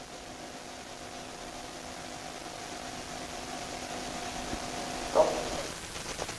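Electric motor of a continuous passive motion (CPM) knee splint humming steadily as it slowly bends the knee, then stopping shortly before the end.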